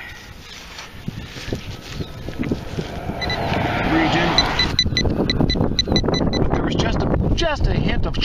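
A hand digger scraping and crunching into wet, muddy soil, with wind buffeting the microphone. About three seconds in, a metal detector's electronic beeping starts: a rapid run of short, high beeps, about four or five a second, that stops about two seconds before the end.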